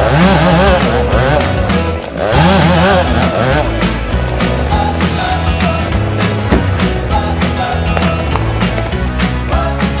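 Chainsaw cutting through a tree trunk at its base, its engine pitch wavering under load in two spells during the first few seconds, with a short dip between them. Background music plays throughout.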